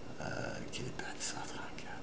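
A man's whispered, breathy speech under his breath: short hissing consonant sounds with almost no voiced tone.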